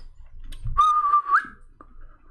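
A person whistling one short note, held level for about half a second, then sliding up at the end.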